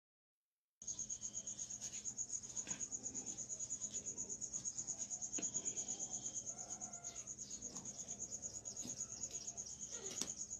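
A cricket chirping steadily in the background, a continuous, rapid high-pitched pulsing of several pulses a second.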